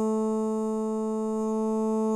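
A single vocal note auditioned in Melodyne while the mouse holds it, played back as one held, synthetic-sounding tone that stays at a perfectly steady pitch with no vibrato.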